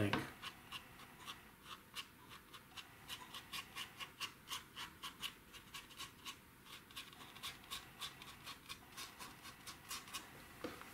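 Small round watercolor brush, blotted nearly dry, tapping and flicking against watercolor paper in short, faint, uneven ticks, two to four a second: rough dry-brush strokes laying in fine tree branches.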